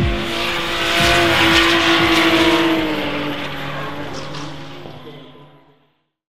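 BMW 2002 drift car sliding with its engine held at high revs and its tyres squealing. The sound fades out toward the end.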